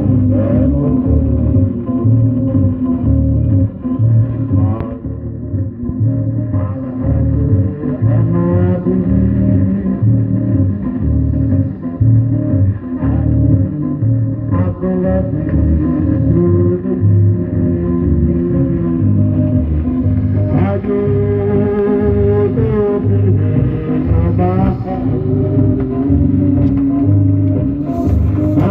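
A 45 rpm vinyl single playing on a record changer: a song with guitar over a steady, regular bass beat.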